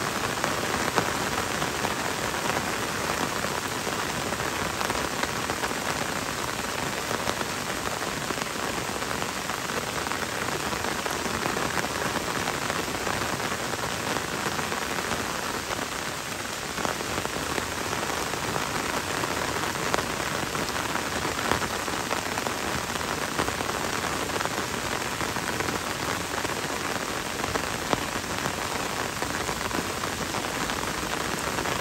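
Gentle rain falling in a forest, a steady even hiss with a few louder drop ticks here and there.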